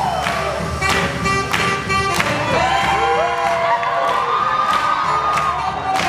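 Live swing jazz band playing, with horns, upright bass and a steady drum beat, and a crowd cheering over the music.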